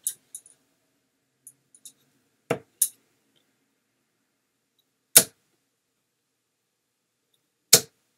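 Three steel-tip darts landing in a dartboard one after another, about two and a half seconds apart, each a short sharp thud. The middle one is the loudest, and a lighter click follows just after the first.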